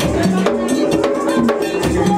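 Haitian Vodou ceremonial music: drums and percussion with a ringing bell beat in a fast, steady rhythm, under group singing.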